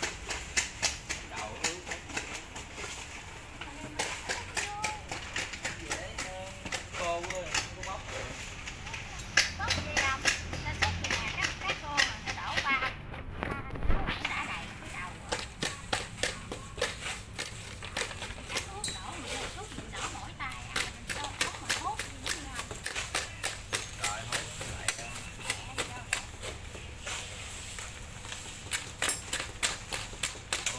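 Rapid, irregular sharp taps and clicks, several a second, as a rod tamps damp sand mix down into hollow plastic dumbbell shells and knocks against the plastic.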